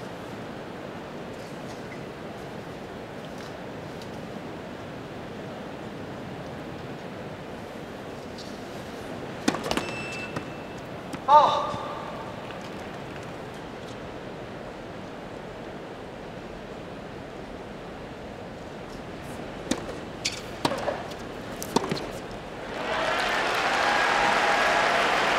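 Tennis stadium crowd murmur, then a few sharp tennis ball strikes as a point is played about twenty seconds in, followed by the crowd breaking into applause near the end.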